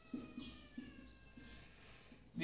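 Faint squeak of a marker dragged across a whiteboard while writing: a thin, drawn-out tone that sinks slightly in pitch.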